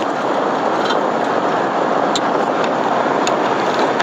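Steady road and engine noise inside a moving van's cab, a loud, even rush with a few faint ticks.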